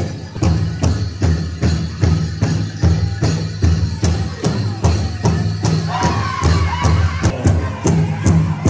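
Powwow drum group playing: a large drum struck in a steady beat about three times a second, with singers' voices over it, most clearly near the end.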